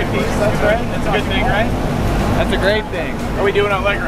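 A jump plane's engine running steadily, heard from inside the cabin as a low drone, with people talking over it in two spells.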